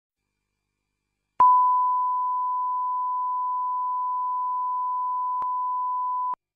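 Steady electronic beep at a single pitch, like a test tone. It switches on with a click about a second and a half in and holds level, with another short click near the end.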